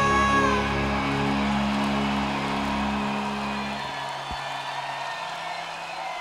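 Live symphonic metal band ending a song: a held sung note stops just after the start, and the band's last sustained chord rings on and fades away over the next few seconds. Crowd cheering carries on beneath it and is left as the music dies out.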